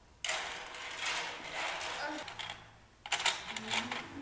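Small plastic puzzle pieces being handled, rattling and clicking, with a few sharper clicks about three seconds in.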